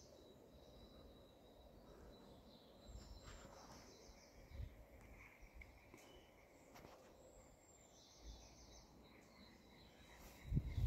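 Near silence with faint bird calls, once about three seconds in and again near the end, over a faint steady high tone, and a few soft low thumps.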